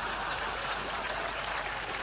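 Studio audience applauding, a steady even clatter of many hands.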